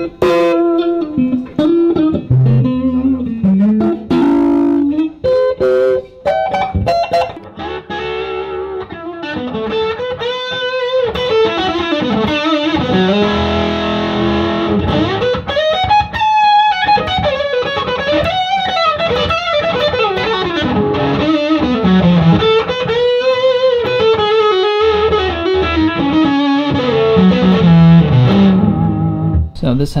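Vintage Fender Stratocaster electric guitar played through an amplifier. It starts with a few sparse notes and chords, then moves into a sustained lead line with bent notes and vibrato, and stops near the end.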